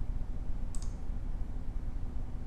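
A single computer mouse click about three-quarters of a second in, against a steady low hum.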